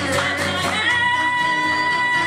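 A live folk-pop song: a woman's voice moves through a short phrase, then from about a second in holds one long high note, over acoustic guitar.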